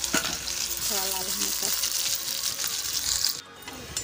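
Chopped onions sizzling in hot oil with cumin seeds in a kadhai, a steady frying hiss. The sizzle cuts off suddenly about three and a half seconds in.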